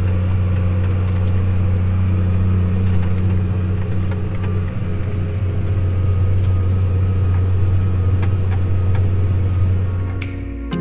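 Tractor engine running steadily under load, heard from inside the cab while it pulls a disk through corn stalks, a constant low hum with occasional light clicks and rattles.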